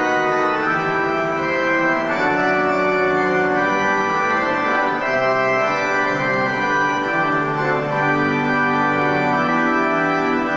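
Organ playing slow, sustained chords as offertory music while the offering is collected.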